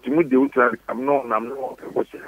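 Speech only: a man talking in a steady run of phrases. His voice sounds narrow, as if it is coming over a telephone line.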